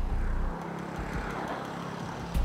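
A steady engine rumble under a hissy wash of noise, dropping a little in level about half a second in.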